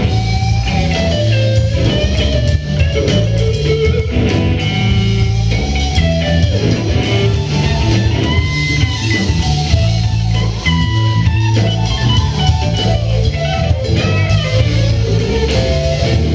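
Live rock band playing an instrumental stretch of a song, with electric guitar carrying the melodic lines over bass guitar and drums, and no singing.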